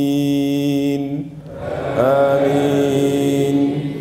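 A man's voice in melodic Qur'an recitation: a long held note that ends about a second in, then after a short pause a second long note that rises in and is held.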